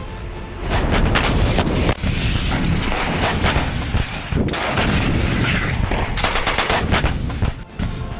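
Towed artillery guns firing, a dense series of loud shots in quick succession with heavy low rumble between them.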